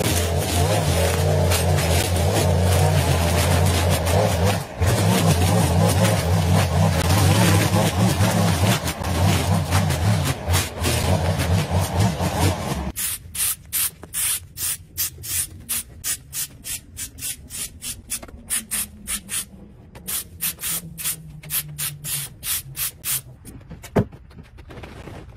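Gas string trimmer running steadily as it cuts dry, overgrown grass. About halfway through it cuts off abruptly, giving way to a run of short scraping strokes, about two a second.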